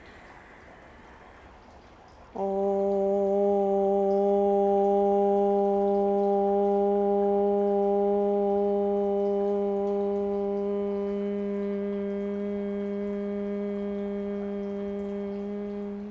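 A woman chanting a single long OM on one steady pitch. It begins about two and a half seconds in, after a quiet in-breath, and is held for some thirteen seconds, slowly fading before it stops.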